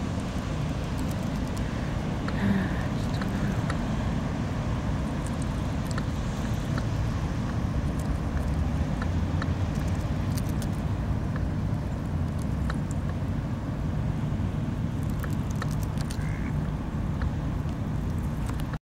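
A steady low rumble, with faint scattered clicks and ticks over it.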